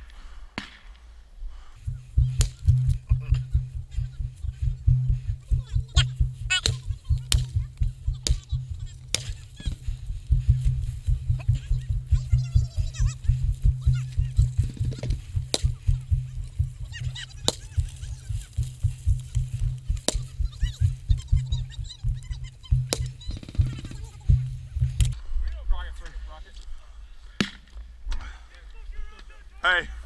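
Rapid low thumping and rubbing from a body-worn action camera being jostled as its wearer moves with gear, stopping abruptly near the end. Scattered sharp cracks sound now and then over it.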